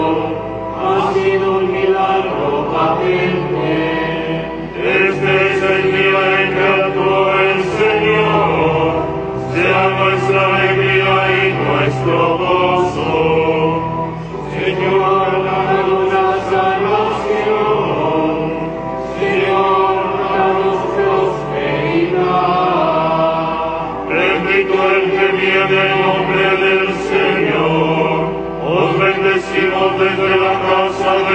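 Liturgical chant sung over sustained low accompanying notes, in phrases that break off briefly about every four to five seconds.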